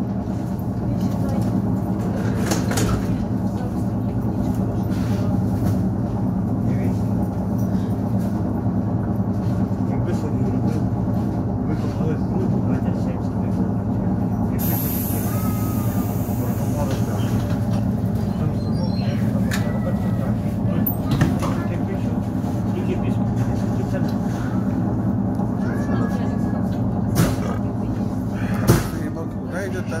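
Steady electric hum and running noise inside an ER9-series AC electric multiple unit rolling slowly. A brief hiss comes about halfway through, and a few short knocks sound near the end.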